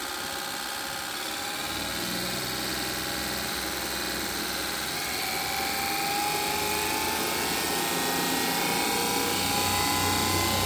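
Electric forklift motor spinning up under a motor controller, a steady whir that rises slowly in pitch and loudness as its speed is raised from about 950 to 1800 RPM.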